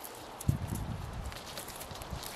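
Soft knocks and rustling from hands handling a couple of freshly pulled red onions and their leaves, with one sharper knock about half a second in.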